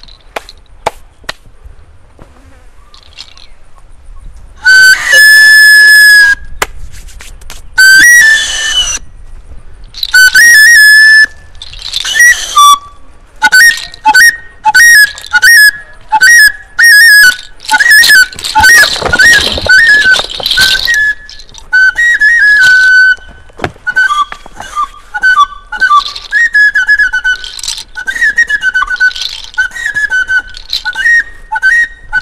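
Flute played in high, piping notes: two long held notes, then a quick run of short notes with small bends, several a second.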